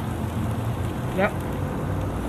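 Beef and kimchi sizzling on an electric tabletop grill, a steady hiss.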